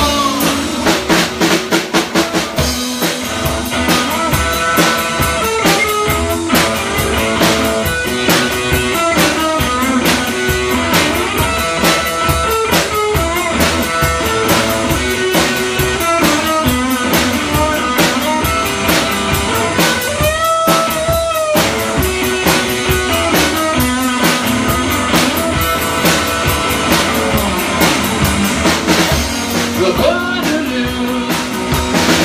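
Live electric guitar and Pearl drum kit playing rock and roll in an instrumental stretch without vocals. The drums keep a steady beat under changing guitar notes, with the guitar bending notes up and down about two-thirds of the way through.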